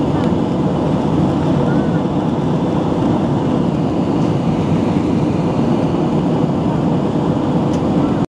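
Steady cabin noise of an airliner in flight: the jet engines and rushing air heard from inside, a constant low noise with no change in pitch or level.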